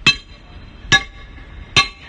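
Three hard metal-on-metal strikes on a welded-shut manhole cover, about one a second, each leaving a brief metallic ring, as the cover is bashed to break the welds.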